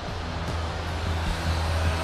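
A low, steady rumbling drone with a hiss over it, part of a dramatic film score or sound design.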